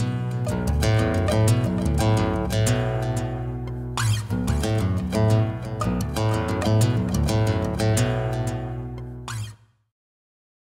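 Outro music led by a strummed guitar over a bass line, stopping abruptly near the end.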